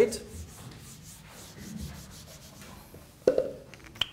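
Whiteboard marker rubbing across the board as equations are written, soft scratchy strokes in the first second or so, then quieter. A brief louder sound a little past three seconds in.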